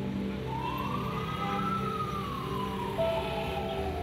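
A distant siren wailing once, its pitch rising slowly for about a second and then falling away over the next few seconds, over a steady low hum.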